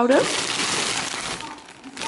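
Metallic foil gift wrap crinkling as a wrapped package is handled and lifted out of a cardboard box, a steady rustle that fades near the end.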